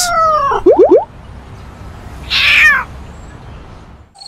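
A cat meowing twice, once at the start and again about halfway through, each call falling in pitch. Just before the first second there is a quick run of three or four loud rising sweeps.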